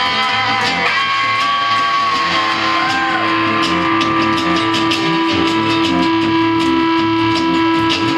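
Instrumental guitar break: an electric guitar lead over a strummed acoustic guitar. The lead starts a held note about a second in, bends briefly, and holds one long sustained note through most of the rest, while the acoustic keeps up a steady strum.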